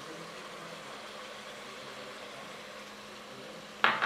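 Browned beef ribs with garlic and tomato frying in a pressure cooker pot: a faint, even sizzle.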